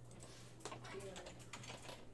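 Computer keyboard typing: a quick run of faint key clicks starting about half a second in.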